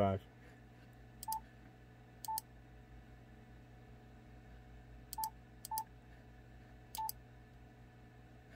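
Yaesu FTDX10 transceiver's touchscreen keypad giving five short beeps at one mid pitch, each with a light tap, at uneven spacing as a frequency is keyed in digit by digit, over a faint steady hum.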